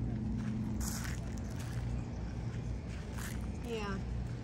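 Footsteps walking over grass and gravel, a few soft scuffs over a steady low rumble, with a short spoken "yeah" near the end.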